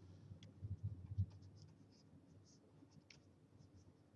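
Faint scratching and light tapping of a pen stylus on a graphics tablet as strokes are painted. There are scattered small ticks throughout and a few soft low bumps in the first second or so.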